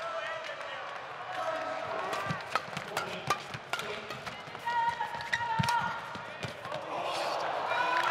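Badminton rally: rackets striking the shuttlecock in a rapid exchange, with shoes squeaking on the court mat over a murmuring crowd. The crowd noise swells near the end as the point is won.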